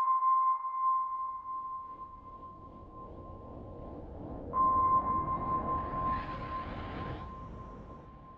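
Atmospheric sound design: a clear, high sonar-like ping that rings out and slowly fades, struck again about four and a half seconds in, over a low, dark rumble.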